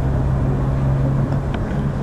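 A steady low hum over continuous background noise, with no speech.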